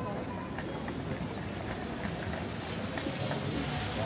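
Street ambience on a wet city street: a steady wash of traffic noise, with faint voices of passers-by.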